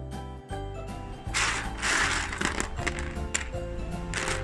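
Background music playing. A little over a second in, sun-dried penne, dried as hard as uncooked pasta, rattles and clatters on a plate for over a second as a hand stirs it.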